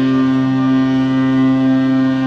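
Cruise ship Sapphire Princess's horn sounding one long, low, steady blast.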